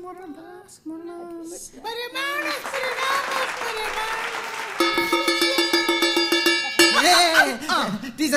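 A short stretch of singing, then studio audience laughter from about two seconds in. Near the middle, a school bell made from a steel plate is struck rapidly with a rod for about two seconds. A voice follows near the end.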